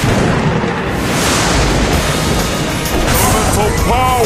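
Online slot game audio as its free-spins round begins: a sudden deep, rumbling boom with a long rushing tail over the game's music. Short arching tones sound near the end.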